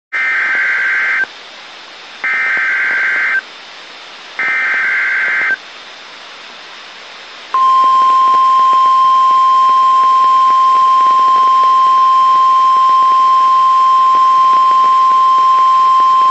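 NOAA Weather Radio Emergency Alert System signal: three bursts of warbling SAME digital header data, each about a second long and a second apart, followed about seven and a half seconds in by the steady single-pitch 1050 Hz warning alarm tone, which runs on past the end.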